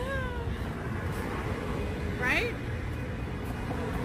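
Two short, high, meow-like vocal calls, over a steady low rumble. The first falls in pitch right at the start; the second rises and falls about two seconds in.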